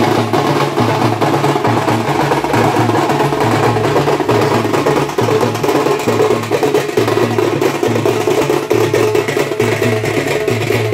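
A festival procession drum band playing loudly, with slung drums beating a fast, steady rhythm and hand-held cymbals clashing over the top.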